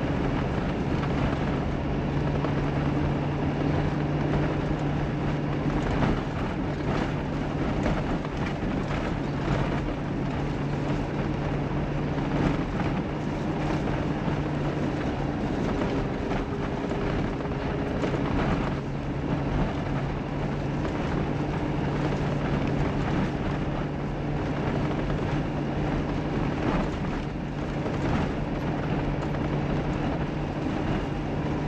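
Mitsubishi Pajero Sport driving on a snow-covered road: a steady engine drone at an even pitch under constant road and tyre noise, with a few brief knocks from the road surface.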